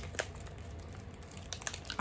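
Faint handling noise of small objects: one sharp click about a quarter second in and a few light ticks near the end, over a low steady hum.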